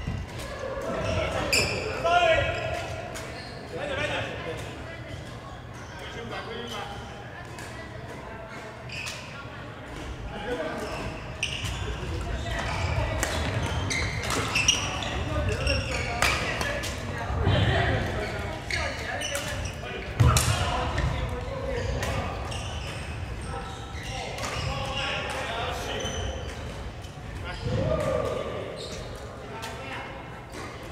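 Badminton rally: repeated sharp smacks of rackets hitting the shuttlecock and footsteps on the wooden court, echoing in a large hall, with voices chattering in the background.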